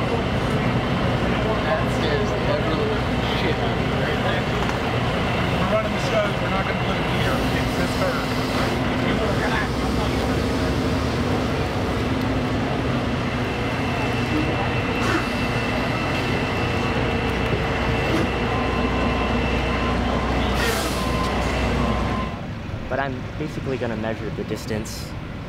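Semi-truck diesel engine running steadily as the rig is manoeuvred, with people talking nearby; the engine sound drops away about two seconds before the end.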